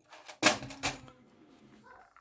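Two sharp clacks about half a second apart, the first the louder, followed by quiet handling noise: small hard objects being handled on a wooden tabletop.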